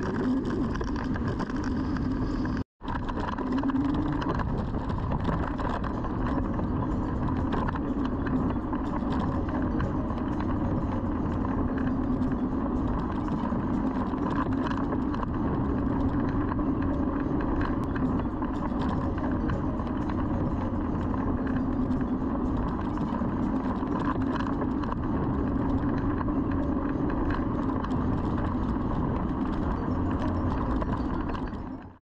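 Steady wind and road rush from an electric scooter riding along at speed, with a constant low hum under it. The sound drops out completely for a moment about three seconds in.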